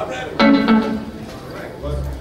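A couple of plucked guitar notes ring out about half a second in, amid low talk in a hall.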